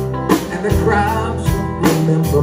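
Live band playing a slow pop ballad: drum kit marking a slow beat, with a hit about every one and a half seconds, over bass and guitar, and a man's voice singing through the microphone.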